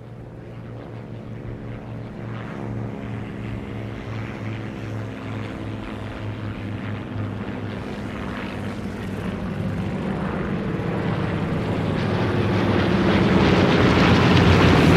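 A low-flying biplane's propeller engine running as it approaches, growing steadily louder, with a regular pulsing beat.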